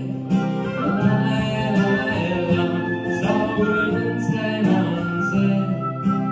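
Oboe playing a melody of long held notes over a strummed acoustic guitar, performed live.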